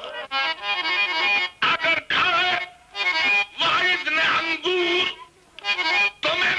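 A man's qawwali singing voice with harmonium accompaniment, in wavering sung phrases broken by two short pauses.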